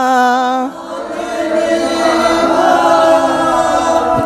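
Unaccompanied singing of a Hindi song line: one long held note, which about a second in thickens into a blend of several voices singing together.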